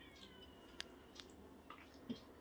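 Near silence: room tone, with a few faint clicks about a second and a half apart and a faint, thin, high-pitched call near the start.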